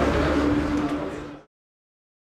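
Outdoor background noise from the pitch, with a low rumble and a steady hum, fading out to silence about one and a half seconds in.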